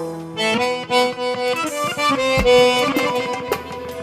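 Chromatic button accordion playing a quick, ornamented solo melody in Armenian traditional style, with the band's bass dropped out and only a few light drum strikes behind it.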